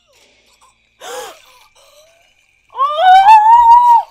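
A short cry falling in pitch about a second in, then a loud, high, drawn-out scream rising steadily in pitch near the end.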